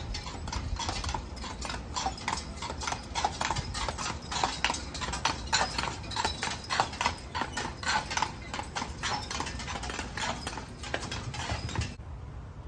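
A carriage horse's hooves clip-clopping on an asphalt street as it walks past at a steady pace, the steps loudest in the middle as the horse passes closest.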